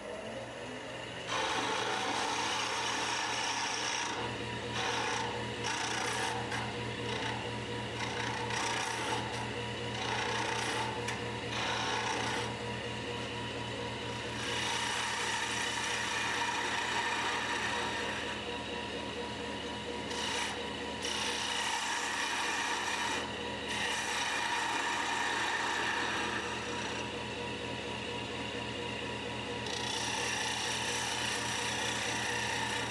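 Wood lathe spinning a thin lacewood spindle while a hand-held turning tool cuts it: a steady scraping hiss of the cut over the lathe motor's hum, broken by many brief pauses as the tool comes off the wood. The motor hum rises in pitch in the first second, before the cutting starts.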